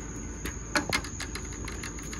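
A handful of light, irregular clicks and knocks of heavy fishing rods and reels being handled and set against one another, over a faint steady background hum.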